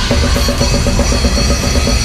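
Technical death metal band playing live, heard close from the drum kit: Pearl drums and Sabian cymbals driving a fast, even pulse of strokes about ten a second over the guitars and bass.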